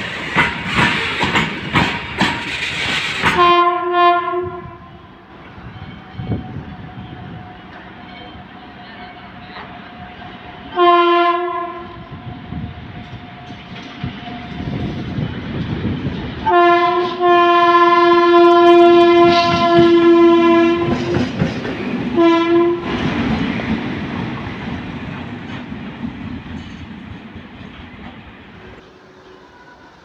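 Freight wagons rolling past with a rapid clickety-clack of wheels over rail joints, which stops a few seconds in. An approaching WAP7 electric locomotive then sounds its multi-tone horn: two short blasts, a long blast of about four seconds, and one more short toot. The locomotive then passes with a rushing rumble that fades away.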